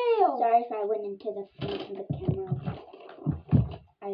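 A child's wordless vocalizing: a held voiced tone that slides down at the start, then a run of short, choppy vocal sounds.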